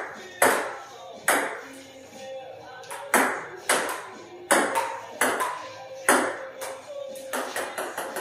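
Table-tennis ball hitting the table and paddles in a slowed-down rally: about ten sharp, irregularly spaced hits, each ringing out with a long, drawn-out decay over a steady faint tone.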